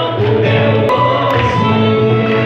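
Singing into a microphone over a backing of choral voices, with long held notes and no breaks.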